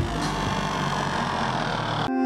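A steady, dense wash of noise over a low hum, with no beat, its high end slowly dimming over the two seconds.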